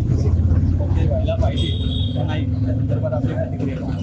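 Low, steady engine rumble of a road vehicle close by, easing slightly toward the end, under men talking.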